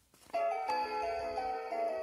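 Fisher-Price interactive plush puppy toy playing an electronic tune through its built-in speaker, set off by a press of its heart button; the melody starts suddenly about a third of a second in and steps from note to note.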